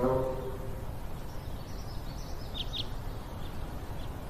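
Outdoor ambience: a steady low rumble with a small bird chirping twice, briefly and faintly, a little past halfway.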